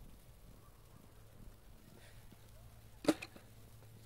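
A skateboard dropped onto the snowy street: one sharp clack about three seconds in, over faint low background noise.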